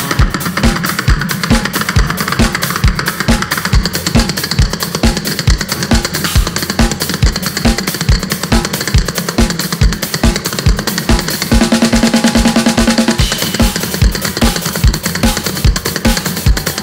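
Instrumental live music from a hurdy-gurdy and drum kit: a steady, fast kick-drum beat with snare and cymbal hits drives throughout, under the hurdy-gurdy. The hurdy-gurdy's sustained notes stand out more strongly about twelve seconds in.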